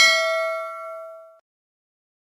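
Notification-bell sound effect: a single bell ding with several clear tones that rings out and fades away by about a second and a half in.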